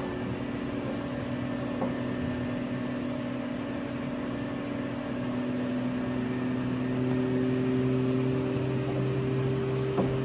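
Miele Professional PW 6065 Vario commercial washing machine in its 60 °C main wash, humming steadily as the drum tumbles the sudsy load. About six seconds in, the hum changes pitch and grows a little louder as the drum starts turning again after a pause.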